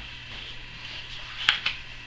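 A quiet room with a low steady hum, and a short sharp paper click about one and a half seconds in as hands move on the pages of a picture book.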